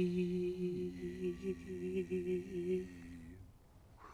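A man crying in one long, drawn-out, wavering wail held on a low pitch, which stops about three and a half seconds in.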